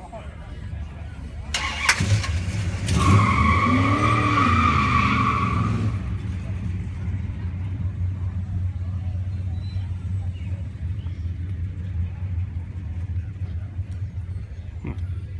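A car engine starting about two seconds in, with a high whine and a brief rise and fall in revs over the next few seconds, then settling into a steady low idle.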